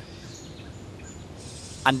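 Quiet outdoor background hiss with two or three faint, short, high bird chirps, before a man's voice starts near the end.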